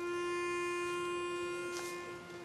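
A pitch pipe sounding one steady note, giving the starting pitch to an a cappella barbershop choir; it starts suddenly and holds for about two seconds before fading. A brief rustle near the end.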